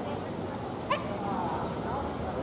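A dog gives one short, sharp yip about a second in, with people's voices in the background.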